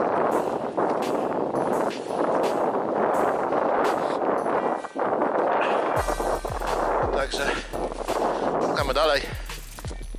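Strong wind buffeting the microphone as a person walks over frozen ground, with sharp crunching knocks from the steps. In the last few seconds a metal detector's wavering tone is heard.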